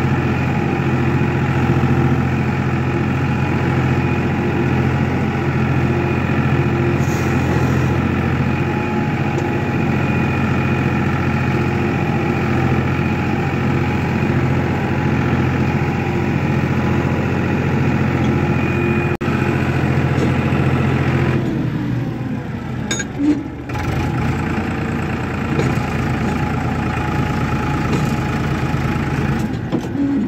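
Farmtrac 42 HP tractor's diesel engine running at a steady speed. About 21 seconds in the even note breaks up into a rougher, unsteady sound with a couple of knocks.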